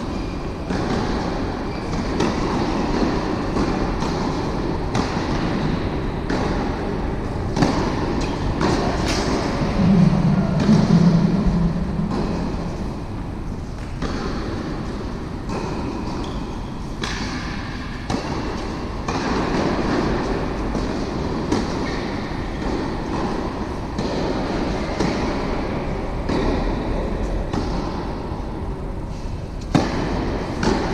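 Tennis balls struck by rackets and bouncing on an indoor court, sharp pops at uneven intervals, over a steady rumbling hall ambience. A brief low hum swells about ten seconds in.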